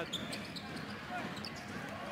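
Arena sound of a basketball game in play: a steady crowd hubbub with the ball bouncing on the hardwood court.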